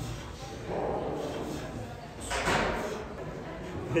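Gym sounds: low voices and, about two seconds in, a short noisy burst.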